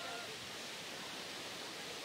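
Steady, low rush of whitewater rapids running through a canoe slalom course.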